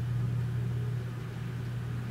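Room tone between speech: a steady low hum with nothing else happening.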